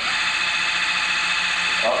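Flutter excitation system running in its continuous mode as its frequency is stepped up from the control panel: a steady high whine and a low hum over an even hiss.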